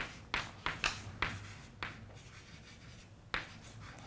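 Chalk writing on a blackboard: a quick run of short taps and scratches over the first two seconds, then a lull and one more sharp tap near the end.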